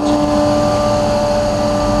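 Truck-mounted carpet-cleaning machine outside, running steadily: a loud, constant drone with a steady hum that does not change in pitch.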